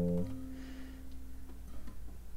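A 2017 Masaki Sakurai classical guitar's plucked chord with an F in the bass dying away. The bass note is cut off about a quarter second in, and a single higher note rings on until near the end, where it is faint.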